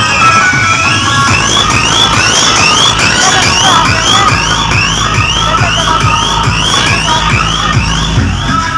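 Loud electronic dance music from a DJ sound system, with heavy bass and a repeating rising siren-like synth sweep, about two a second.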